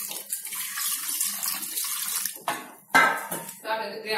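Water poured in a stream into a metal pressure cooker over pieces of shark, splashing against the pot; the pouring stops about two and a half seconds in.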